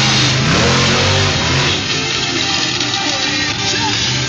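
Monster truck engine running loud, revving up about half a second in, then quieter after about two seconds as the truck pulls away, with music playing underneath.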